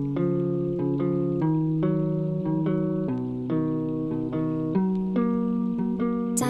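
Trap beat intro: a sad plucked guitar melody in F-sharp major, notes ringing over one another, with no drums yet.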